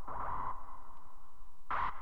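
Electronic dance music of the free-party tekno kind: a fast-pulsing synth sound centred in the midrange over a low pulsing beat. A louder, brighter layer comes in near the end.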